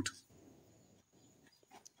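A pause in a man's speech: the end of a word cuts off at the start, then near silence, with only a faint high hum.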